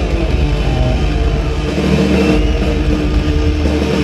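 Live punk rock band playing loud, with distorted electric guitar chords held over drums.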